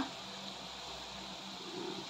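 Faint, steady hiss of thick chilli sambal cooking in a wok.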